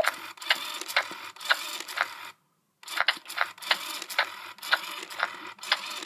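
Battery-powered Baby Alive doll's motorized mouth and eye mechanism whirring as she chews on a spoon, with a click about twice a second. It cuts out briefly about halfway through, then runs on.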